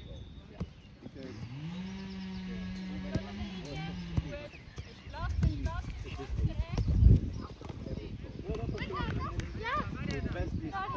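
Outdoor youth football sounds: children and touchline spectators calling out, with one long drawn-out vocal call held for about three seconds near the start and scattered short high shouts after it. A few low rumbles around the middle, loudest about seven seconds in.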